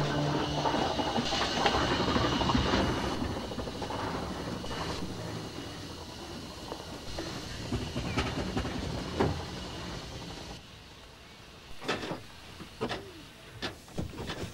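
Steam traction engine running and moving, with irregular mechanical clanks and knocks from its works. It grows quieter after the first few seconds. A short electronic music sting ends in the first second.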